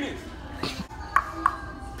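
Speech: the end of a called-out word, then two short faint voiced syllables a little over a second in, over quiet background music.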